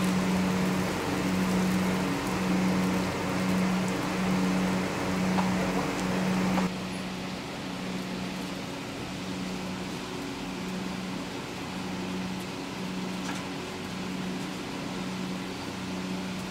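Small electric fan blowing air across a charcoal grill: a steady motor hum that pulses a little faster than once a second, over a rushing hiss of air and coals that is louder for the first six or so seconds and then drops away.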